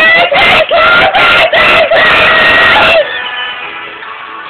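A girl singing very loudly and shouted, close to the microphone, in a run of short held high notes. The singing breaks off about three seconds in, leaving only fainter tones.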